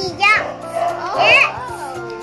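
A young child's high-pitched voice making two short playful vocal sounds, about a quarter second and a second and a half in, over background music with held notes.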